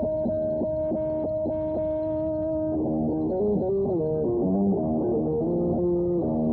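Electric guitar playing a melody: a long held high note over a pulsing accompaniment, then, about halfway through, a fast run of notes with pitch bends.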